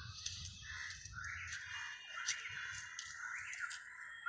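Outdoor background noise: a low rumble with bird calls, including caws, and a few faint clicks.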